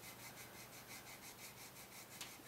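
Faint, quick back-and-forth rubbing of wet 400-grit sandpaper, backed by a piece of eraser, on a lacquered rosewood guitar fingerboard, levelling a ridge in the lacquer.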